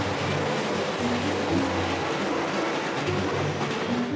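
Keisei Main Line commuter train running over a railway bridge overhead, a steady rushing rumble that stops at the end. Background music plays under it.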